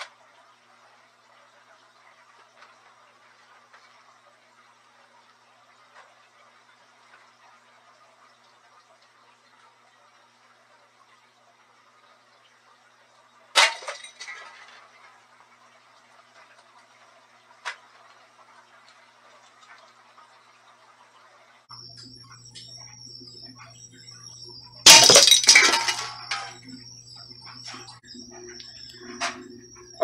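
A single air-gun shot about halfway through, a sharp crack with a short tail, followed a few seconds later by a small click. Near the end, over a steady electrical hum, a louder sharp metallic clank with a brief ring: the pellet striking the steel food can's top without going through.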